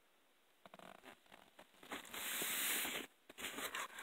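A cardboard shoebox being opened: a few light handling taps, then about a second of cardboard sliding against cardboard as the lid comes off, then more faint handling.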